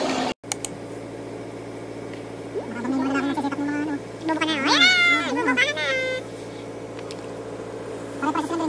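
A voice making two drawn-out calls that bend up and down in pitch, about three and five seconds in, over a steady low hum.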